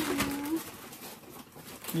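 A man's voice holding one short, steady hum-like tone for about half a second. Then a quiet room with faint crinkling from the plastic bag of frozen gyoza being handled.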